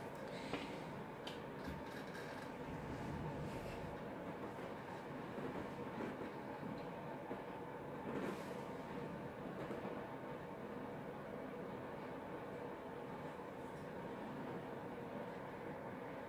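Faint steady room hum with a few soft clicks, and no beading being done.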